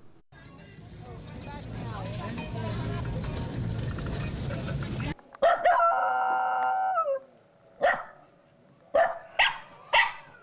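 A dog howling about halfway through: one long, steady, high howl that dips at the end, followed by a few short calls. Before it there are about five seconds of a noisy murmur of voices that slowly grows louder and then cuts off.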